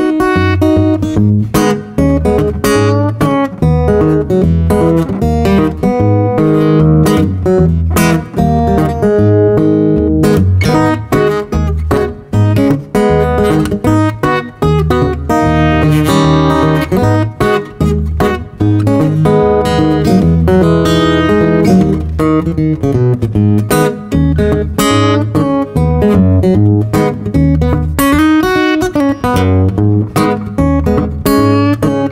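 Cort Core Series all-mahogany cutaway acoustic guitar played fingerstyle: a pulsing thumbed bass note runs under picked treble notes.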